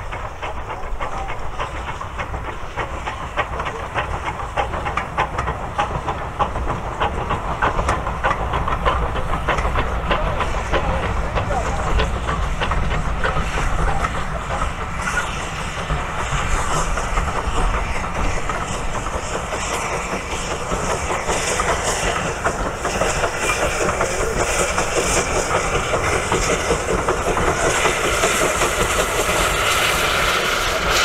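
Steam-hauled passenger train passing at speed behind a small saddle-tank locomotive: its exhaust and steam hiss, then the coaches rolling by with their wheels clicking over the rail joints.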